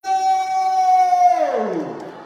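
A man's long, high held shout into a microphone, amplified, holding one steady pitch and then sliding steeply down and trailing off about a second and a half in.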